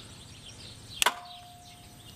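The main contactor of an electric tractor conversion clicking shut about a second in, followed at once by a steady tone that holds on. The click is the contactor connecting the 72-volt battery pack.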